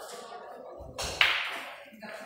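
A single sharp crack about a second in, the loudest sound here, ringing out briefly.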